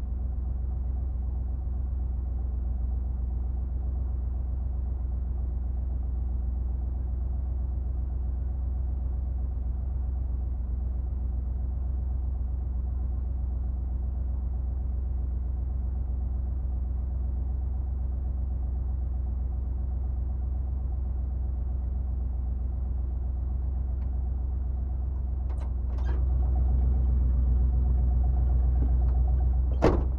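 A 1977 Jeep Cherokee's engine idling steadily, a low even running heard from inside the cab. It grows louder about four seconds before the end, when a few sharp clicks are also heard.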